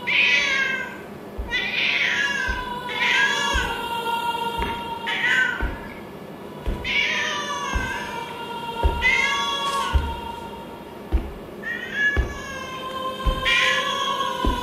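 A cat meowing about ten times, each call around half a second long with a curving pitch, over eerie music with a steady held drone and low thuds.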